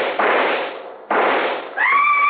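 Two rifle shots, a little over a second apart, each a sharp crack fading quickly, as a radio-drama sound effect. Near the end a high cry rises and holds.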